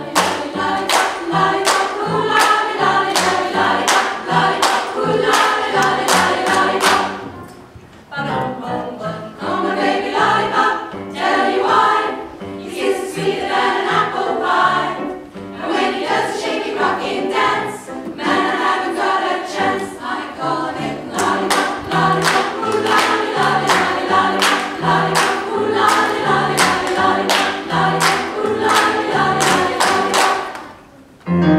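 Women's choir singing over a steady percussive beat, with a short break in the sound about seven seconds in.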